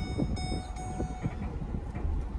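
Ford pickup heard from inside the cabin while being driven: a steady low rumble of engine and road noise.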